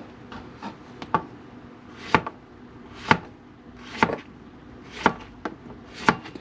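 Kitchen knife cutting a yellow summer squash into quarters on a plastic cutting board. Each stroke ends in a sharp knock of the blade on the board, the strongest about once a second, with a few lighter taps between.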